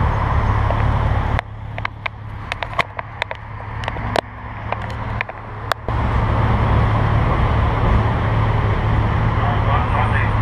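A motorcycle engine idles steadily under street traffic. Partway through, the sound drops to a quieter stretch of several sharp clicks and knocks as a GoPro camera is handled and switched back on, and then the idling returns.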